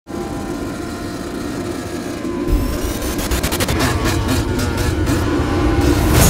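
Dirt bike engine running at speed, rising in pitch at first and getting louder about halfway through.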